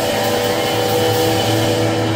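Live rock band sustaining a steady, droning chord of held notes with no singing, amplified guitar and keyboard ringing through the club PA.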